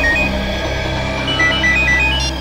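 Mobile phone ringing with a rapid electronic ringtone of short beeps alternating between two pitches. The beeps pause for about a second and start again. A low steady drone of background music runs underneath.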